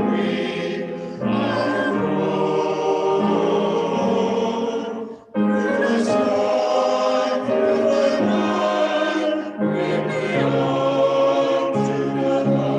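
A small mixed choir of men and women singing a hymn in long, sustained phrases, with a brief break for breath about five seconds in.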